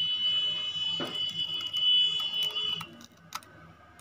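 A steady high-pitched electronic tone, like a buzzer, that stops about three seconds in. Under it are a few faint clicks from scissors cutting through a laminated PVC card.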